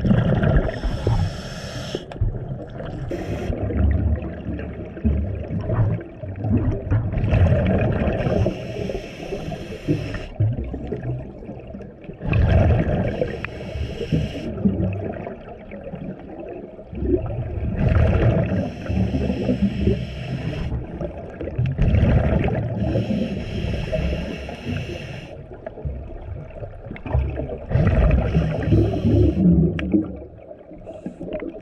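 Underwater recording of a scuba diver breathing through a regulator: bursts of hissing and bubbling every four to five seconds, each lasting two to three seconds, over a steady low rumble.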